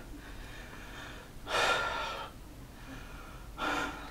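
A man breathing hard from push-up exertion: a long, loud breath about one and a half seconds in and a shorter one near the end.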